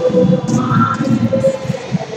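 Live worship music from an acoustic guitar and an electric keyboard, with one long held note.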